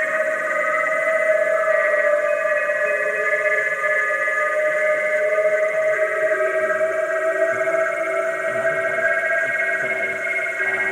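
Psychedelic trance track in a passage without drums: layered, sustained synthesizer tones held steady, with no beat.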